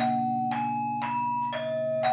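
Gamelan ensemble playing: struck metallophones and kettle gongs sound a new note about twice a second, each one ringing on, over a low gong tone held underneath.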